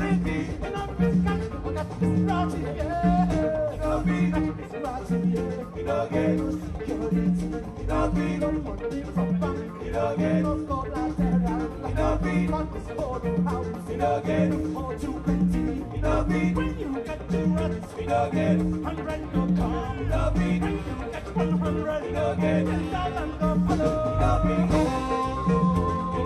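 Afrobeat band playing live: a steady groove of drums, congas, electric guitars, keys and horns over a repeating bass figure.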